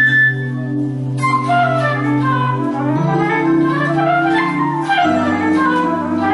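Electric guitar through a synthesizer with a flute-like tone, improvising fast jazz-fusion runs that climb and fall, over a backing of sustained chords that change about every two seconds.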